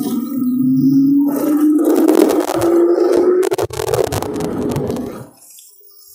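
Electric scooter motor whining and rising steadily in pitch as the scooter accelerates, with wind and road noise. The sound cuts off about five seconds in.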